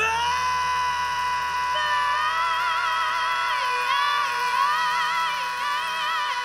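Live blues band playing: a long high note slides up into place at the start and is held steady, with a wavering melody line above it.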